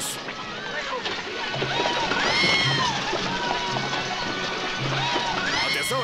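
Film soundtrack of orchestral score, a low note repeating about once a second, under overlapping shouts and high cries, with a woman's scream about two seconds in and another near the end.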